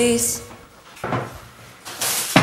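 Background music cuts out at the start, then a white oak cabinet door is handled, with a soft knock about a second in and another short sound at the very end as the door is opened.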